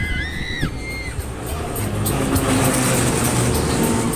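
Low rumble of wind on the microphone of a rider on a moving Ferris wheel, mixed with fairground music. A few high, held tones that bend in pitch come in the first second, and a brighter hiss rises in the second half.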